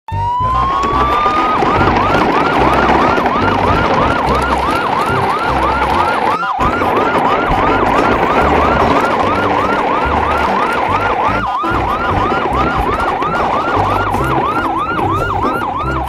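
Siren: a rising wind-up, then a fast yelp of repeated rising sweeps, about three a second, over a loud noisy rumble, with two brief cut-outs.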